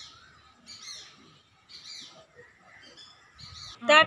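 A bird calling over and over: short, high, falling chirps, roughly one a second.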